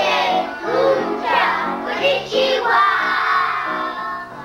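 Music: children's voices singing a song over an instrumental backing with a stepping bass line.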